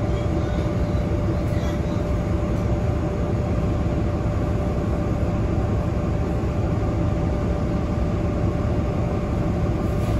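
Inside a Nova Bus LFS city bus under way: steady engine and road rumble with a constant high hum running through it.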